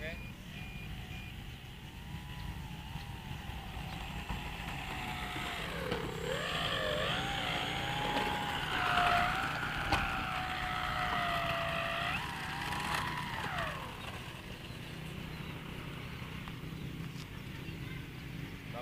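Engine of a Lil Ripper RC 3D model aeroplane running at low throttle on the ground, its pitch wavering up and down, then dropping away and stopping about 14 seconds in as it is shut off.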